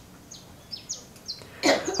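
Several short, high bird chirps over a quiet room, spread through a pause; a man's voice starts again near the end.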